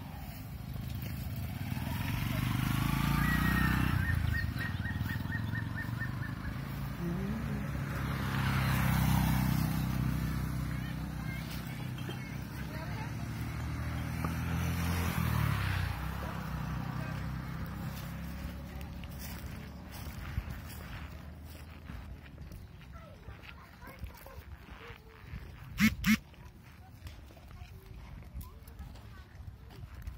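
Motor vehicles, likely motorcycles, passing along a dirt road: a low engine hum that rises and fades in waves through the first half, with a short high trill about three seconds in. Two sharp knocks come near the end.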